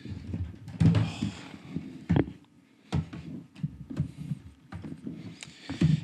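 Irregular knocks, clicks and rustling from handling a cable and an external hard drive close to the microphone while plugging the drive in.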